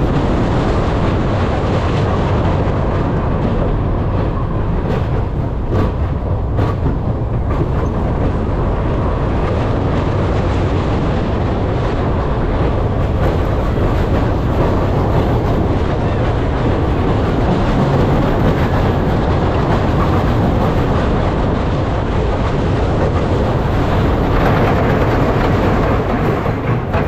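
Scorpion, a Schwarzkopf steel looping roller coaster: the train running at speed over the track with a loud, steady rumble of wheels, and a few clatters about five to seven seconds in.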